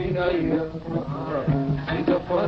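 A man singing a Somali song, accompanied by a plucked string instrument.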